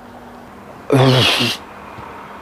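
A man's short wordless vocal sound with a breathy hiss, about a second in and lasting about half a second.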